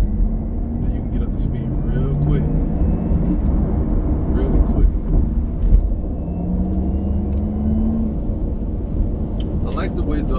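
Porsche Taycan Turbo heard from inside the cabin while accelerating: a steady low road rumble, with the car's synthesized electric sport sound, a fake engine rumble, rising in pitch twice, about a second in and again around six seconds in.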